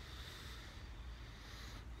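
Faint outdoor background hiss with a low fluttering rumble of wind on the phone's microphone.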